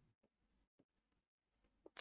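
Near silence with a few faint, light ticks and scratches of a stylus writing on a digital pen tablet.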